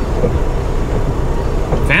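Semi truck's diesel engine idling, heard from inside the cab as a steady low rumble.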